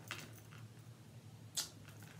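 Quiet room tone with two faint, brief noises, one at the very start and one near the end.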